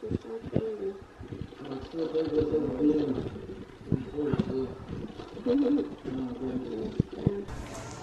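A young child's voice fussing and whining in drawn-out sounds without clear words, with small knocks of handling around it. A short burst of rustling noise comes just before the end.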